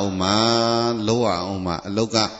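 A man's voice chanting: one long held syllable on a steady pitch, then shorter rising and falling phrases, in the style of a Buddhist monk's recitation.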